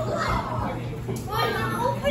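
Several young children talking and calling out over one another at once.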